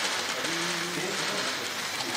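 Rapid, continuous clicking of many camera shutters firing at a press photo call, with a faint voice briefly underneath.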